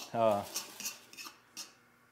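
A fork clinking and scraping against a mixing bowl as hard-boiled egg yolks are mashed, several light clinks within the first second and a half.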